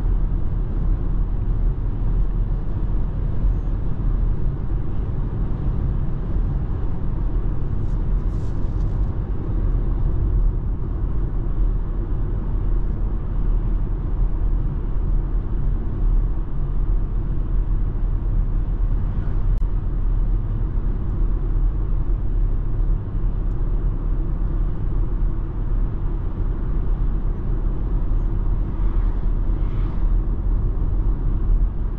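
Steady low road and tyre rumble with some wind noise inside the cabin of a BMW iX1 electric SUV cruising at about 90 km/h.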